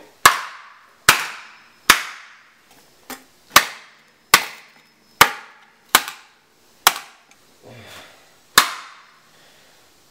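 A hammer striking a computer expansion card's circuit board about ten times, one sharp blow with a short ring roughly every second, to beat its bent pins flat.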